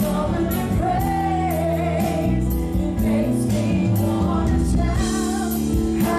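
Live gospel worship song: a woman sings lead over keyboard, guitar and a drum kit keeping a steady beat with regular cymbal strikes.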